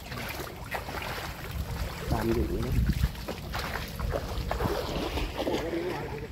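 Wading through shallow, muddy marsh water among dense cattails: water sloshing and swishing irregularly with each step, with leaves brushing past.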